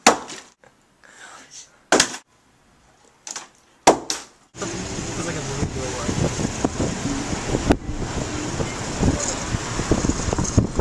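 Three sharp knocks about two seconds apart, then, from about halfway, continuous indistinct voices.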